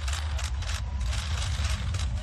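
Press cameras firing many shutter clicks, several a second at uneven spacing, over a steady low rumble.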